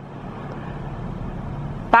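Steady road traffic noise heard from inside a parked car, growing slowly louder.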